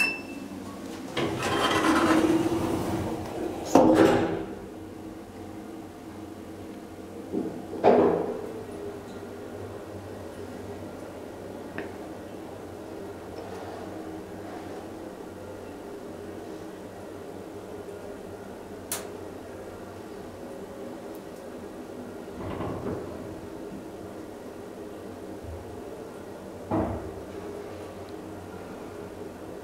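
KONE hydraulic passenger elevator riding down. It opens with a sliding rumble that ends in a sharp knock about four seconds in, then a loud clunk as the car sets off. A steady hum runs under the ride, with a few softer clunks later on.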